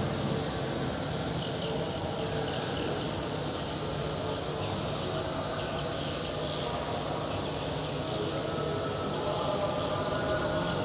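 Steady background noise: a low hum with a faint, even high hiss, and no distinct event.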